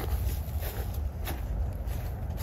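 Footsteps walking across short grass, a few soft steps, over a steady low rumble.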